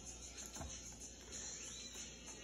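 Faint crinkling of gift-wrapping paper being picked and pulled at by hand, the paper wrapped tight and not yet giving way, with a faint knock about half a second in.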